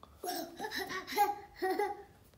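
A toddler laughing in about four short, high-pitched bursts.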